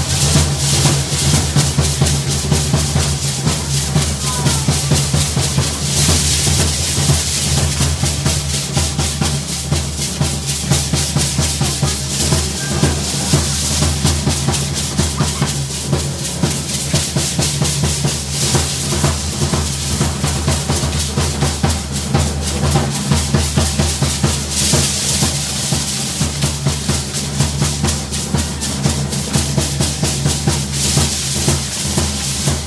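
Matachines dance drumming: large drums beaten in a fast, steady, driving rhythm without pause. Over it sounds a bright rattling from the dancers' hand rattles.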